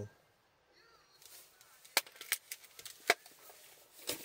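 A few sharp clicks and knocks, the loudest about three seconds in, over a faint background.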